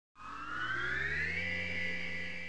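Electronic intro sting: a synthesized chord-like tone that fades in, glides smoothly upward in pitch, then holds steady.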